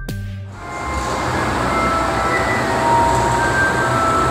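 A short electronic intro jingle cuts off in the first half-second. It gives way to a steady, rising din inside a dark ride, with faint held musical tones over a noisy rumble.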